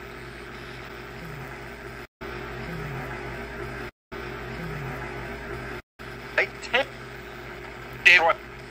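Ghost-box app on a phone sweeping AM and FM radio channels: a steady static hiss that cuts out to silence three times, with short clipped voice-like snippets near the end.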